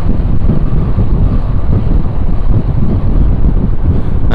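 Wind buffeting the microphone on a moving motorcycle: a loud, steady low rumble of rushing air.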